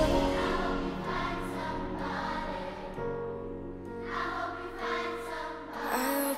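Background music: a quiet passage of held chords that swells again near the end.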